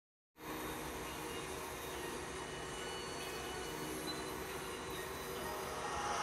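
Steady background noise with a few faint held tones in it, cutting in abruptly a moment after the start.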